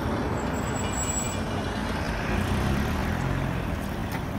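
Street traffic noise: a steady low rumble of motor vehicles running, with a faint thin high whine for about a second near the start.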